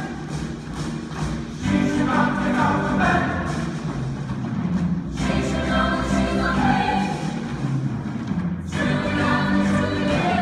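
Musical theatre ensemble singing in chorus over orchestral accompaniment, in phrases a few seconds long with short breaks between them.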